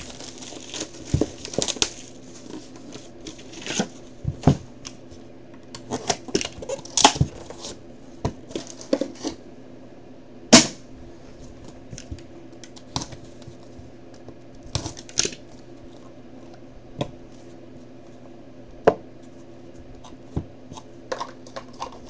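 Hands unwrapping and opening a sealed box of trading cards: the wrapper and cardboard rustle and tear, with scattered clicks and taps and one sharp snap about ten seconds in.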